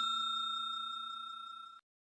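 Bell-chime sound effect of a subscribe-button animation, its ring fading steadily and cut off abruptly near the end.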